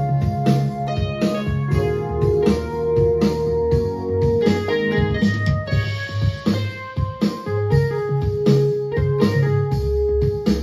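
Yamaha CK61 stage keyboard played by hand, chords and held notes over a steady beat from a backing track triggered on the keyboard.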